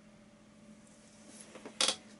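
A low steady hum, then near the end a short rustle of movement and one brief sharp knock, as of someone shifting back in a chair.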